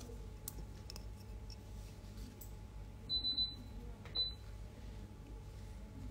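Short high electronic beeps, three in quick succession about three seconds in and one more a second later, over a low steady hum and a few faint handling clicks.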